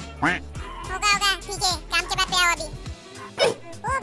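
High-pitched cartoon character voices speaking over background music; the music's low bed stops about three seconds in.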